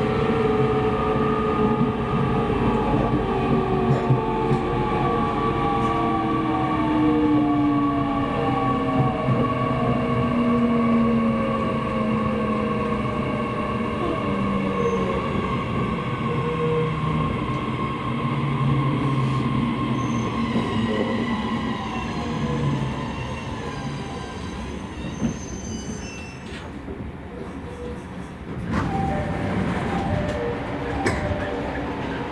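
JR East E501 series electric train slowing for a station stop: the traction motors' whine falls steadily in pitch as the train decelerates, over the running noise of wheels on rail. Thin high brake squeals come in during the later part.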